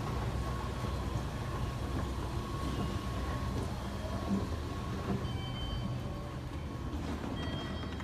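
Mitsubishi escalator running with a steady low rumble from its drive and moving steps and a faint steady hum. The rumble eases slightly near the end.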